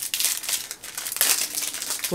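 Small wrapper crinkling and rustling as it is picked at and peeled open between the fingers, in a run of quick irregular crackles.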